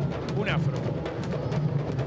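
Candombe drums of a comparsa's drum corps playing in a dense, steady street-parade rhythm. A brief voice cuts in about half a second in.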